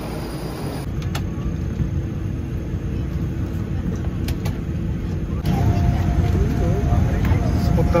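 Steady low rumble of an airliner cabin at the gate, changing abruptly about a second in and again about five and a half seconds in. After the second change a steady hum joins it, with faint voices murmuring near the end.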